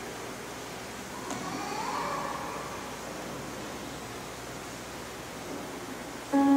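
Quiet room tone: a steady hiss, with a brief faint rising tone about a second and a half in.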